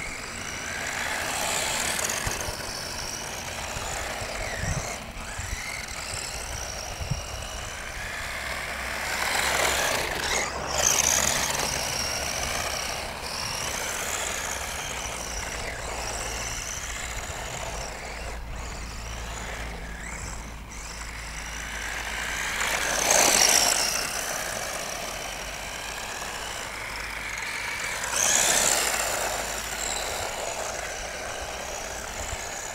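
Subotech RC car's electric motor and gears whining, the pitch rising and falling as the throttle is worked, with louder swells about a third of the way in, again past the two-thirds mark, and near the end.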